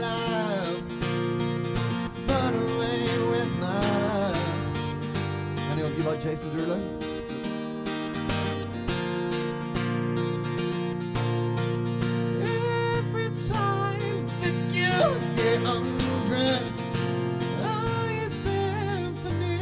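Acoustic guitar strummed steadily, with a man's voice singing over it in places, a live solo performance through a small PA.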